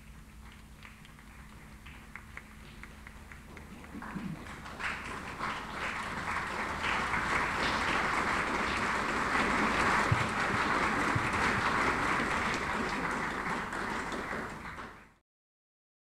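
Audience applause: a few scattered claps at first, swelling into full, steady applause about four seconds in, then cut off abruptly near the end.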